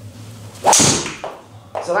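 A driver swung at full speed: a brief swish, then the sharp crack of the clubhead striking a golf ball, just under a second in.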